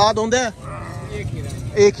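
A goat bleating: one short, quavering call at the start.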